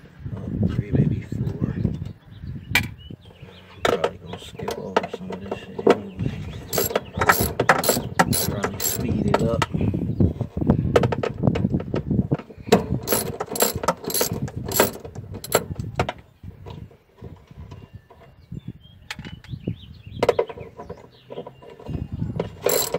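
Hand ratchet wrench clicking as bolts on the fuel-pump access flange of a car's fuel tank are backed out. The clicks come in runs of rapid strokes with short pauses between them.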